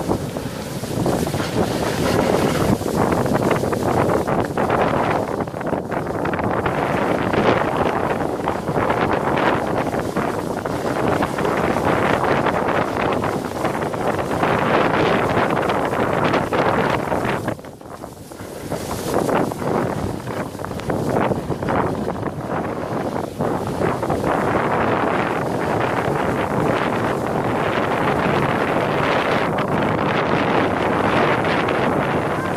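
Sled sliding fast down a packed-snow run, its base hissing and scraping over the snow, with wind buffeting the microphone. The rushing noise is continuous but drops away briefly a little past halfway.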